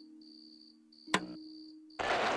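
Crickets chirping in pulses of about half a second over a fading, sustained low musical chord, with a single sharp click about a second in.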